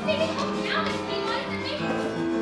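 Live pit orchestra playing sustained chords with a voice over it.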